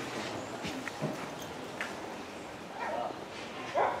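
Hushed open-air ambience of a small football ground held quiet for a minute's silence: a faint background hiss with a few soft ticks, broken by two short, faint distant calls about three seconds in and near the end.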